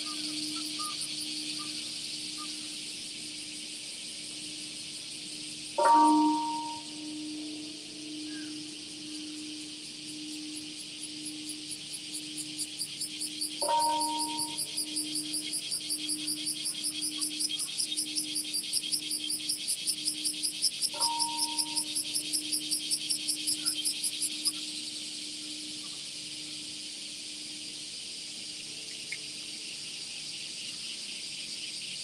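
Large bronze peace bell struck three times, about seven to eight seconds apart, tolling for the moment of silence; the first strike is the loudest and each leaves a long pulsing hum. A cicada's high rhythmic buzzing starts about twelve seconds in and stops abruptly after about twenty-four seconds.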